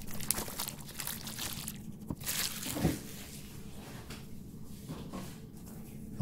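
Crinkling and rustling of a small cardboard box and its plastic film as it is cut open and unwrapped by hand.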